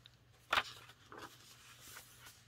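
Paper pages of a junk journal being handled and turned: one sharp paper flap about half a second in, then fainter rustles.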